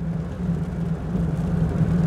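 Engine and road noise of a moving truck heard from inside the cab: a steady low hum over a rushing road noise.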